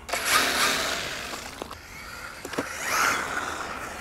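MJX Hyper Go brushless RC car pulling away at full throttle on tarmac, its motor and tyres loudest at the launch and fading as it runs off, then swelling again about three seconds in. It pulls away smoothly on the throttle.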